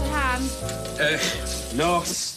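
Food sizzling in a frying pan under the last held notes of the theme tune, with brief voice sounds near the start and end.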